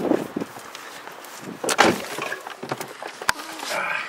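Knocks and rustling of a person climbing into a car's driver seat, with one sharp click a little over three seconds in.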